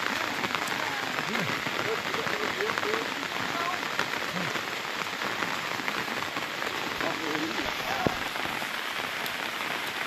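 Rain falling on open water: a steady, dense hiss scattered with the ticks of individual drops, with faint voices under it.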